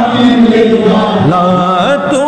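A man singing a naat, a devotional song in praise of the Prophet, into a microphone. He holds long notes, then sweeps the pitch up and down in ornamented turns in the second half.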